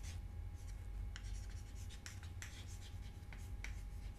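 Chalk writing on a blackboard: a quick string of short, quiet scratches and taps as symbols are written out.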